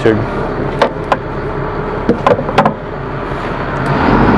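A steady low mechanical hum, like a running engine or motor, with a few short clicks and taps over it.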